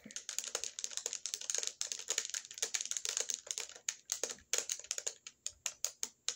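Typing on a computer keyboard: a quick, irregular run of keystroke clicks that thins out to a few single keystrokes near the end.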